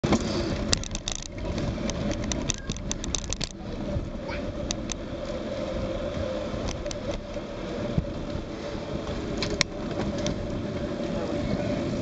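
Wind rushing over the microphone and tyre and road noise from a bicycle ridden at speed on tarmac. Sharp clicks and rattles from the bike come in a cluster over the first few seconds and a few times later.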